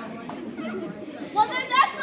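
Only voices: a murmur of children's chatter, then a child's high voice calling out loudly about one and a half seconds in.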